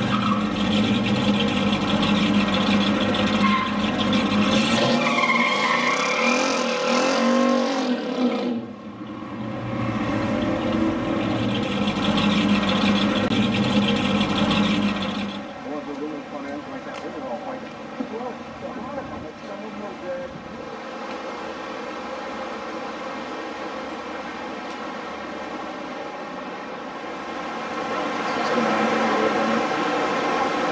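Chrysler 426 Hemi V8 with dual four-barrel carburettors in 1968 muscle cars: loud engine running at the drag-strip start line, dipping briefly about eight seconds in. From about fifteen seconds in, a quieter steady engine note that swells again near the end.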